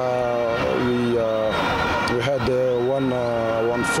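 A man's voice making long, drawn-out 'uh' hesitation sounds between words, over a steady background hum.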